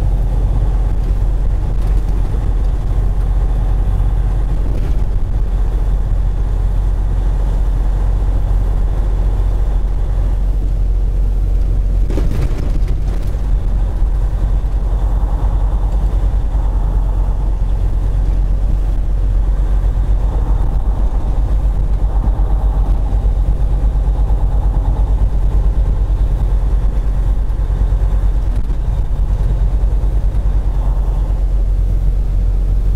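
Semi truck's diesel engine running steadily while driving, a continuous low drone with road noise heard from inside the cab. A brief knock sounds about twelve seconds in.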